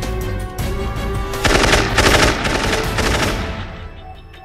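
Rapid automatic gunfire sound effects over background music, with the heaviest volley about a second and a half in, dying away near the end.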